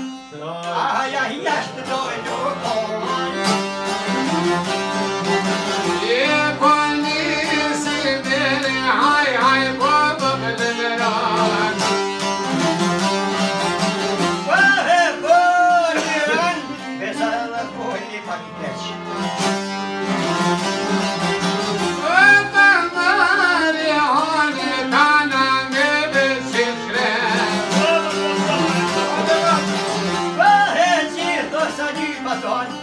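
Albanian folk ensemble of çiftelis and other long-necked plucked lutes, a bowl-backed lute, an accordion and a bowed string instrument playing together under a man's singing voice, which rises and falls in long ornamented lines.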